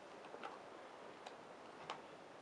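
Quiet room with three faint, sharp clicks spread across it, the last and loudest near the end.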